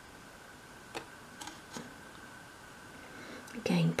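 Quiet room tone with a faint steady high-pitched hum and three faint small clicks about a second in. A woman's voice begins just before the end.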